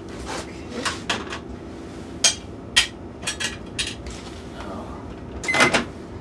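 A microwave oven is being loaded and started: sharp clicks and knocks of its door latch and the plate going in, then a short keypad beep near the end as it starts running.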